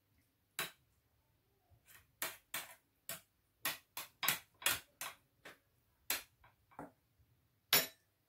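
A kitchen utensil tapping and clicking against a dish in an irregular run of light knocks, quicker in the middle, while the sardine layer of the salad is being spread.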